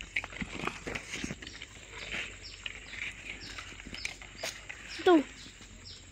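Leaves and twigs of a dokong tree rustling and brushing close against the phone as it moves through the foliage, a dry irregular scratching, with a short spoken word near the end.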